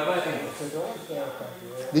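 Indistinct talking at a moderate level, too unclear to make out words.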